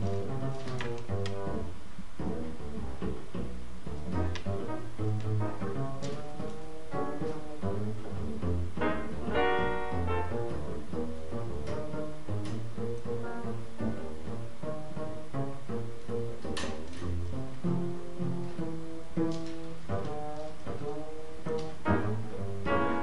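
Live acoustic trio music led by an upright double bass played pizzicato, its plucked low notes to the fore, with lighter guitar and piano behind it.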